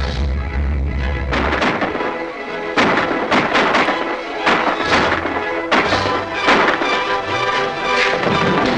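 Orchestral soundtrack of a 1941 movie-serial trailer. From about a second in, a run of sharp crashing hits comes roughly every half second over the music.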